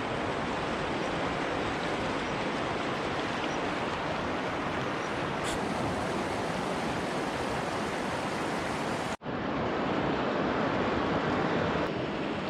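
Steady rushing of river water, an even noise without any pitch. It cuts out for an instant about nine seconds in, then resumes.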